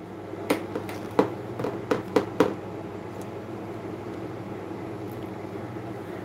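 Several light, sharp clicks and taps in the first half, from handling a phone, over a steady low room hum.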